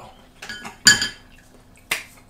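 Chopsticks and tableware clinking against ceramic bowls and dishes as they are set down on the table. There are a few light clicks, then a louder clink about a second in with a brief ring, and one more sharp tap near the end.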